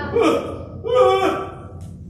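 Wordless vocal sounds from a person: gasping cries in two bursts about a second apart.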